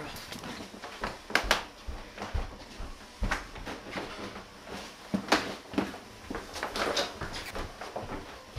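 Irregular footsteps and knocks on a wooden floor, a string of separate sharp thumps with uneven gaps.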